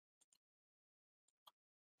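Near silence, with a few very faint short clicks.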